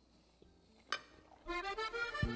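Accordion music starts about a second and a half in, after a near-quiet stretch. Before it there is a single light clink of a fork on a glass dish, about a second in.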